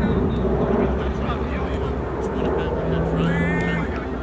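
Distant players shouting and calling to each other during a soccer game, over a steady low rumble. A higher shout stands out near the end.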